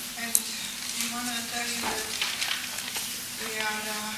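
Steady hiss of room and recording noise, with faint voices murmuring on and off and a small click just after the start.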